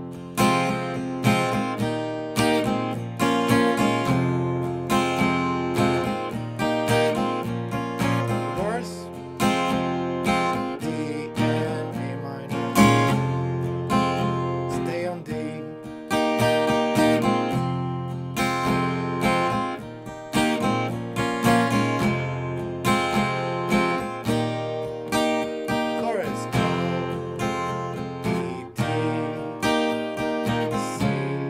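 Acoustic guitar with a capo on the first fret, strummed in a steady rhythm through a chord progression.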